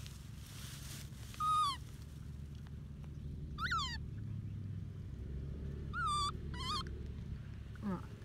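Baby macaque giving four short, high-pitched coos over a low steady hum: one about a second and a half in, a falling one near the middle, and two close together a little after six seconds.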